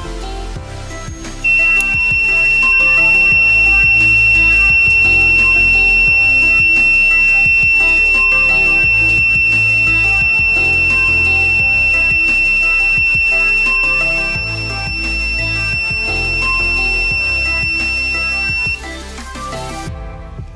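Breadboard fire alarm buzzer sounding one loud, steady, high-pitched tone, starting about a second and a half in and cutting off suddenly near the end: the alarm tripped by a lighter's heat on the thermistor. Background music plays throughout.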